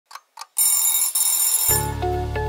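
Alarm-clock sound effect: two quick clock ticks, then a loud, high alarm-clock bell ringing for about a second. The ringing stops as music with a steady bass line comes in near the end.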